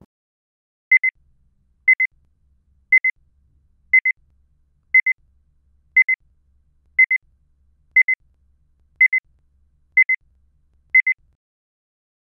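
Electronic timer beeping: a short, high double pip once a second, eleven times, with silence in between, counting off the answer time after an exam question.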